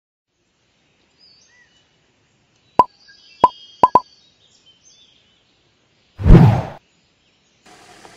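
Sound effects for an animated logo intro: faint high chirps, then four quick pops about three to four seconds in, then a loud short rush of noise about six seconds in. A steady outdoor background comes in just before the end.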